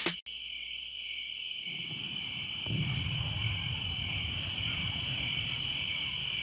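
Crickets chirping in a steady high trill, a recorded night-time soundscape. A low rumble comes in about two seconds in and grows louder.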